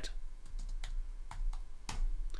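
Computer keyboard being typed on: several separate keystrokes.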